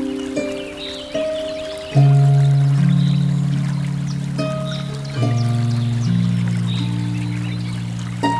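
Solo harp playing a slow hymn: single plucked notes, with deep bass notes struck about two seconds in and again about five seconds in that ring on under the melody. A river flows faintly and steadily underneath.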